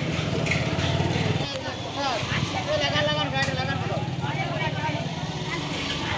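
A motorcycle engine running at idle close by, with a steady low pulsing note that drops away for a moment about a second and a half in, under the chatter of people in a busy street market.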